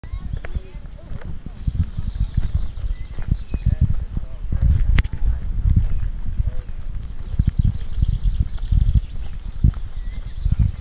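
Footsteps of someone walking with the camera, heard as low thuds about two a second, with people talking in the background.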